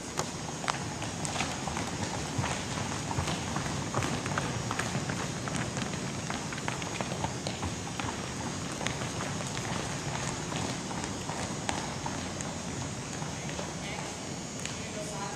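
Footfalls of a group of people jogging in sneakers on a hardwood gym floor: a continuous, irregular patter of many overlapping steps.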